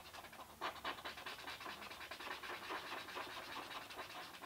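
A thick-tipped pen scratching quietly on paper in quick, repeated back-and-forth strokes as it colours in a solid black patch of a drawing.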